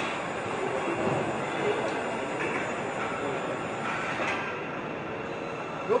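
Steady rumbling hiss of a moving vehicle, with faint thin squealing tones and a few light clicks.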